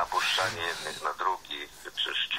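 Speech only: a voice talking, too unclear for the recogniser to write down.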